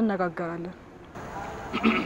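A woman speaking briefly in a drawn-out, falling tone, then a short lull with only faint background noise.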